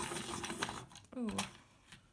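Children's hand-crank pencil sharpener grinding a thick coloured pencil, a dense rasping that stops about a second in. The sharpener struggles with the thick pencil: it doesn't seem to like it.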